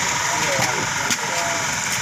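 An engine idling steadily, with faint voices talking in the background.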